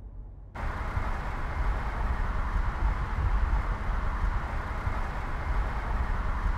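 Mercedes-Benz A-Class driving along a road: steady engine and tyre noise that starts abruptly about half a second in, after a faint low hum.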